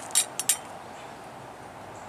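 Three short, sharp clicks in quick succession about a quarter to half a second in, then a faint steady outdoor background hiss.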